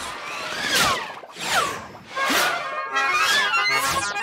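Cartoon soundtrack music with a run of quick falling whooshes, about one every second, as a character speeds off.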